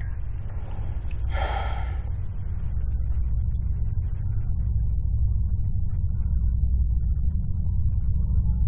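Low, steady rumbling drone, likely the film's tension underscore, growing slowly louder, with a short gasp-like breath about a second and a half in.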